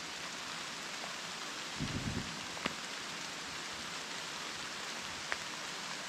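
Steady rain falling through the woods, an even hiss, with a couple of sharp single drop ticks.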